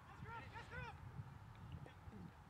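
Faint honking of geese: several short calls in quick succession, each rising and falling in pitch, over a low rumble of wind on the microphone.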